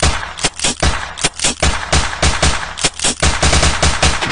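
Rapid gunfire sound effect in the challenge's soundtrack: a long run of sharp machine-gun shots, several a second.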